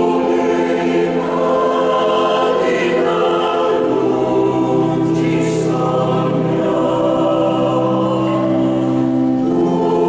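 Mixed choir of women's and men's voices singing a sacred Christmas piece, in long sustained chords under a conductor.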